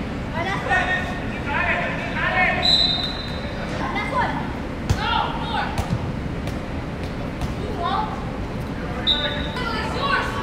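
Shouts and calls from players and onlookers in a large indoor sports hall, with a soccer ball kicked with sharp thuds about five and six seconds in. Two short, steady high whistles sound, one about three seconds in and one near the end.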